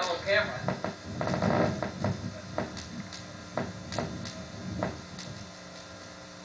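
Indistinct voices in the first second or two, then a few scattered sharp clicks and knocks.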